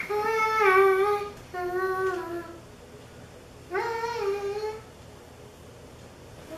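A young girl humming a short tune: three held, wavering notes, each about a second long, with gaps between them.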